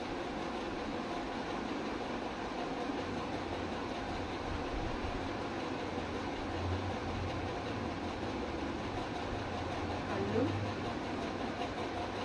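Saree fabric rustling steadily as it is shaken out, unfolded and spread, over a low hum that comes in a few seconds in.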